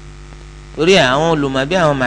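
Steady electrical mains hum from the microphone and sound system. A little under a second in, a man's voice comes in over it, reading aloud with a rising and falling pitch.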